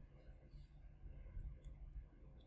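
Near silence: low room rumble with a few faint, short clicks.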